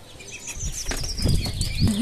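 Loud rustling and bumping noise with a deep rumble, starting about half a second in, with a thin high whine falling in pitch above it. This is the microphone being handled as the camera is moved.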